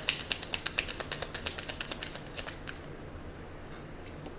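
Oracle card deck being shuffled by hand: a quick run of light card clicks that thins out and stops about two and a half seconds in.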